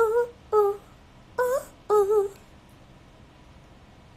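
A woman's voice singing unaccompanied: four short wordless notes over the first two and a half seconds.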